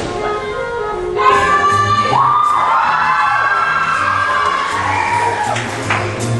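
School big band playing, the brass section holding long chords that swell louder about a second in.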